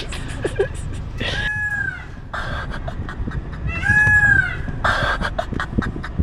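Two meows, each rising then falling in pitch, about a second and a half and four seconds in. Short hissing bursts follow each one, over a low rumble.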